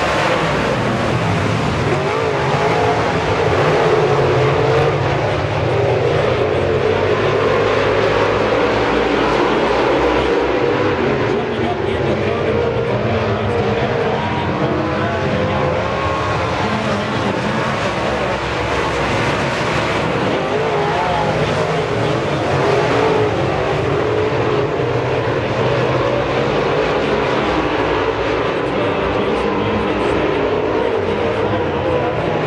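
A pack of dirt-track modified stock cars racing, their V8 engines running hard with engine notes rising and falling as the cars pass.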